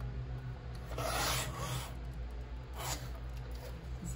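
Sliding paper trimmer's cutting head drawn along its rail, slicing through a sheet of paper: a rasping stroke about a second in lasting nearly a second, then a shorter rasp near three seconds.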